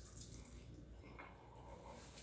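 Faint, soft, wet sounds of biting into and chewing a smoked chicken wing, over near silence. The wing's skin is still a little rubbery in places.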